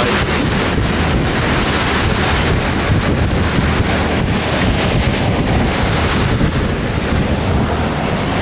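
Wind buffeting the microphone over the steady rush of the bow wave and spray along the hull of a motor yacht running at about 14 knots, with a low drone underneath.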